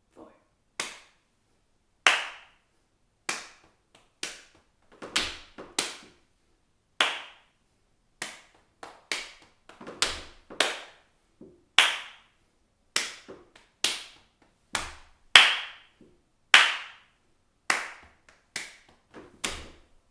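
Hand claps and slaps on the knees in the rhythm of a clapping game, played without singing: a string of sharp claps, some in quick pairs, with a duller knee slap ending each phrase, four phrases in all.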